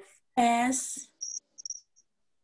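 A woman's voice gives one short word, then three brief, high-pitched chirps come in quick succession.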